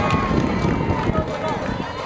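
Several voices shouting and calling out at once, overlapping, with no clear words, from players on the field during a live play.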